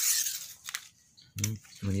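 Coconut leaf being torn lengthwise, a noisy rip that fades out about half a second in, then a single light tap. A man's voice starts speaking near the end.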